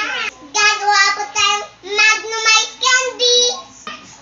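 A young girl singing in a high voice, a string of short phrases with held notes and brief breaks between them.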